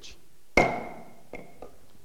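Auctioneer's gavel striking the rostrum twice, a loud knock with a brief ringing tone and then a lighter knock, marking the lot as sold.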